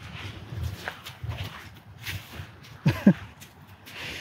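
Soft footsteps and shuffling on a sandy gravel paddock surface, with one brief sharp sound sliding down in pitch about three seconds in.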